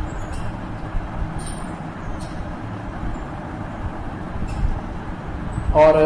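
Steady low background rumble with a faint hum, broken by a few faint clicks. A voice starts just before the end.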